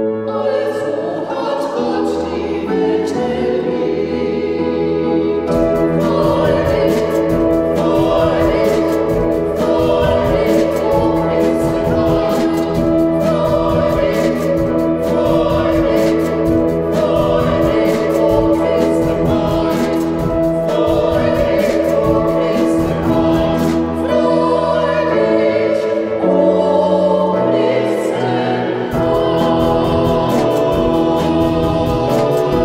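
Music: a choir of singing voices over sustained instrumental accompaniment, with a regular drum beat joining about five seconds in and easing off near the end.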